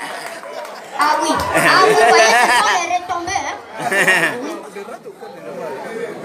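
Indistinct voices of an audience talking over one another, loudest about a second in and again briefly near four seconds.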